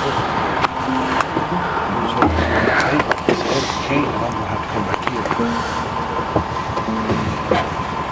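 Road noise inside a moving vehicle on rough ground, with frequent rattles and knocks throughout, and music playing underneath.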